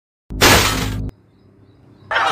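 A sudden, loud crash sound effect of something breaking, lasting under a second and cutting off abruptly.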